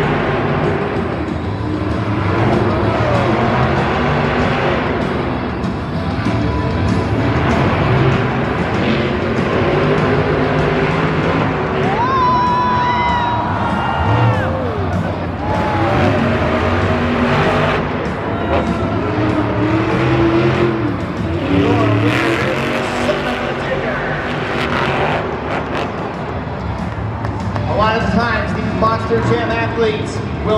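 Monster truck engines (supercharged V8s) racing flat out around a dirt course, the engine note rising and falling through the turns.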